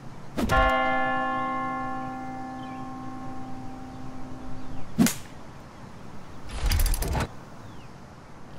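A bell-like tone struck once, ringing out with many overtones and fading over about four seconds. A single short sharp hit follows about five seconds in, and a brief noisy burst comes near the end.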